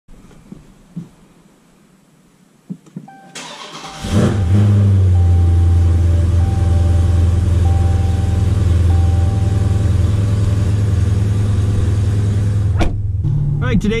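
Dodge Challenger Scat Pack 1320's 6.4-litre 392 HEMI V8 being started: it cranks briefly about three seconds in, catches with a rev flare and settles into a loud, steady idle. A short warning chime repeats over the idle for several seconds. The sound cuts off suddenly shortly before the end.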